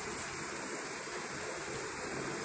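Steady, even hiss of background noise, with no distinct sound standing out.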